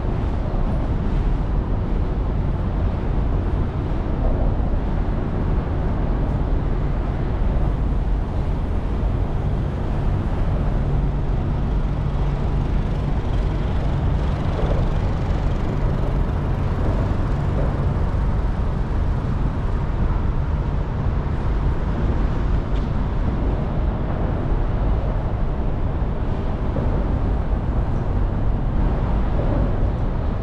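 Steady low rumble of road traffic passing on the elevated highway overhead and the street alongside, with a low engine hum standing out from about ten seconds in until about twenty.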